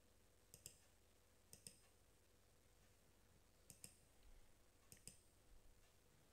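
Near silence broken by four faint computer mouse clicks, each a quick double stroke, about a second or two apart.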